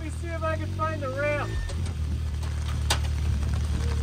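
Can-Am Maverick X3 XRS side-by-side's turbocharged three-cylinder engine idling steadily, with a single sharp click about three seconds in.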